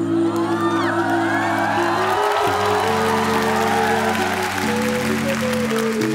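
Stage background music with long held chords, under a studio audience cheering and clapping; the crowd noise swells just after the start and thins toward the end.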